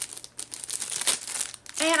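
Clear plastic packaging crinkling as it is handled, in a run of uneven rustles.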